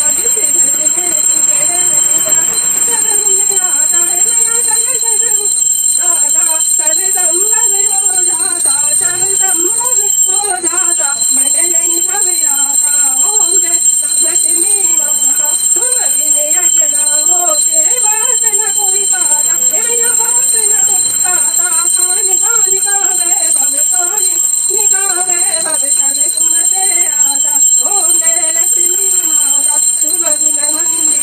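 Voices singing a Hindu devotional hymn during a puja, over a hand bell rung continuously, which leaves a steady high ringing throughout.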